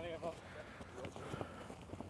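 Faint sounds of players moving on a grass pitch: soft, scattered footfalls, with a brief trace of voice right at the start.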